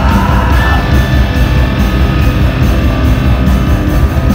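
A rock band playing live and loud: distorted electric guitars, bass and drums in a dense, unbroken wall of sound.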